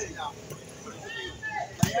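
Onlookers chattering, then near the end one sharp slap as a hand strikes the ecuavolley ball.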